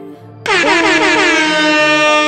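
A DJ air-horn sound effect: a loud held blast that comes in about half a second in, its pitches sliding down at the start and then holding steady.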